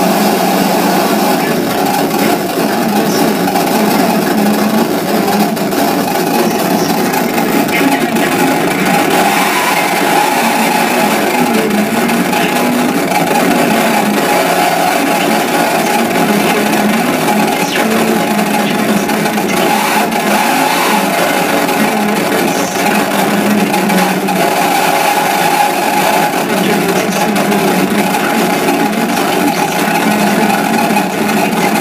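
Live noise music from a table of effects pedals and electronics: a loud, continuous wall of distorted noise that holds steady in level throughout, with a low churning hum at its core.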